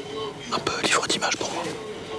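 A man speaking in a hushed, whispering voice, speech only.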